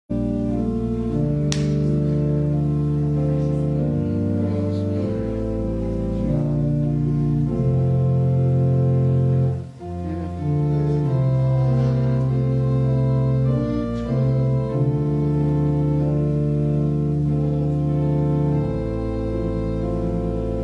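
Organ playing slow, sustained chords over held bass notes, with a brief break between phrases about ten seconds in. A small click sounds about a second and a half in.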